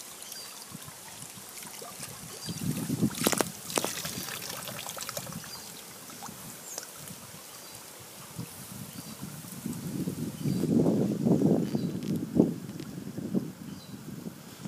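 Water trickling steadily from the return pipe into a fish tank, circulated by a vertical windmill, with wind rumbling on the microphone that swells loudest a few seconds before the end.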